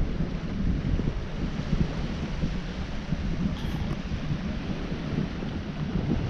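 Wind buffeting the camera's microphone: a steady low rumble with hiss, uneven from moment to moment.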